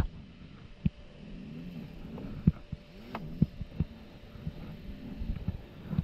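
Dirt bike being wrestled through a rocky gully: irregular sharp knocks and clacks of the bike and its plastics striking the rocks, about half a dozen, over a faint low hum.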